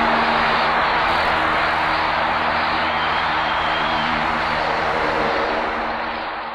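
Audience applauding: a dense, steady clatter of many hands that starts to fade near the end.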